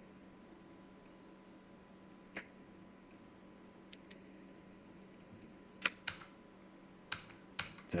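About six sharp, isolated clicks of a computer mouse and keyboard, spaced irregularly over several seconds, in a quiet room.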